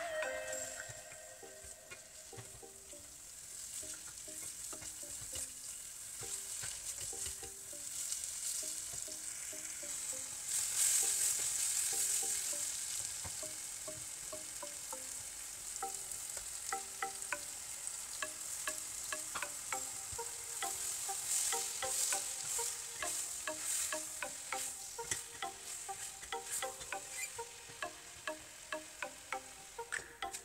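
Chicken pieces sizzling in a stainless steel saucepan while being stirred with a spatula. The sizzle swells louder about ten seconds in and again about two-thirds of the way through, with quick scraping clicks of the stirring near the end.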